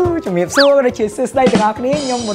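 A man speaking Khmer over background music with a clicking beat. A short whistling tone sweeps up and back down about half a second in.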